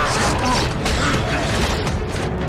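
Action-film sound mix: a heavy metal chain creaking and rattling under strain, over orchestral score.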